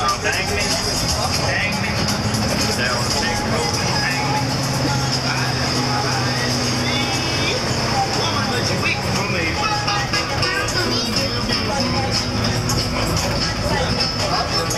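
Inside a converted school bus under way: its engine running beneath passengers' chatter, with music playing throughout.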